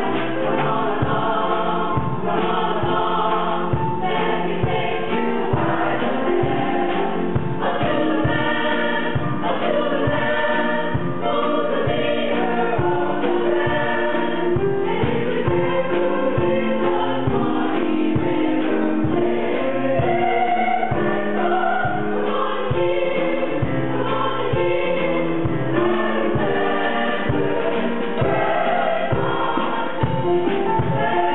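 Mixed choir of men's and women's voices singing a ragtime song, over a steady beat of short low strokes.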